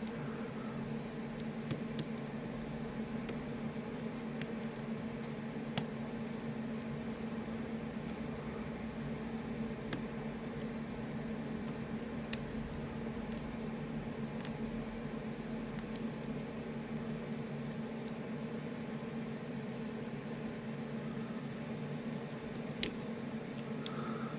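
Sparse small metallic clicks and ticks of a hook pick and tension wrench working the pin stacks inside an ASSA Ruko Flexcore high-security cylinder, over a steady low hum. The clicks come at irregular intervals, a few seconds apart.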